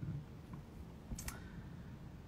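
A quiet pause holding a couple of faint clicks: a slight one about half a second in and a sharper, brief one a little after a second.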